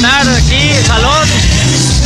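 Live norteño group music played loud through a PA system, with a steady bass line and a voice over it, its pitch arching up and down in the first second or so.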